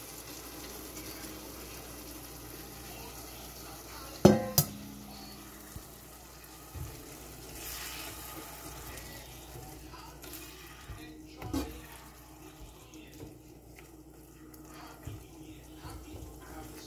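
Shrimp simmering in a steel pot with a steady low sizzle, a spatula stirring and scraping against the pot. A loud metal clank with a short ring comes about four seconds in, and a smaller knock later on.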